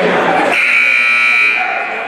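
Gym scoreboard buzzer sounding one steady, high-pitched blast of about a second, starting about half a second in, over crowd chatter. It signals the end of a timeout as the team breaks its huddle.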